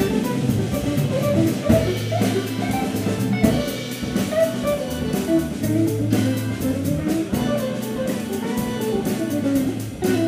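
Organ-trio jazz groove played live: electric guitar and Hammond organ over a drum kit, with melodic runs above a steady low bass line and a regular cymbal beat.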